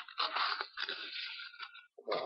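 Paper being handled and crinkled: an irregular crunching rustle that dies away about a second and a half in, with a few light ticks near the end.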